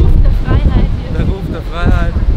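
Wind buffeting the microphone on the open deck of a fast-moving ferry, a loud low rumble throughout. Two short voice sounds cut through it, about half a second in and again near the end.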